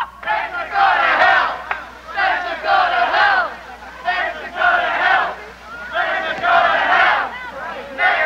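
A crowd of adults shouting together in four loud bursts, roughly two seconds apart, like a chant.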